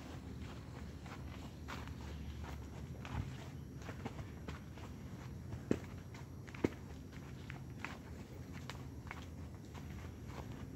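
Grulla gelding walking through deep dry fallen leaves, hooves crunching and rustling in an uneven rhythm. Two sharper cracks stand out a little past the middle, over a low rumble.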